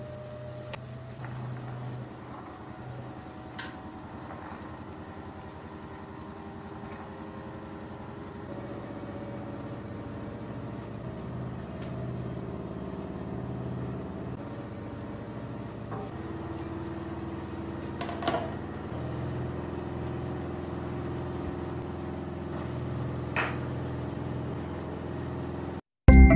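Food simmering in a steel pot on an electric stove, under a steady low mechanical hum, with a few faint clinks.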